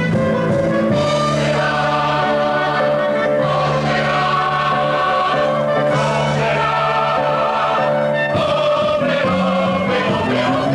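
A stage cast singing together as a chorus with musical accompaniment, in sustained sung phrases.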